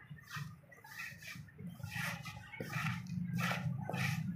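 A wooden straightedge scraping over wet cement mix in a slab mould, in a run of short strokes as the surface is screeded level, over a low rumbling sound.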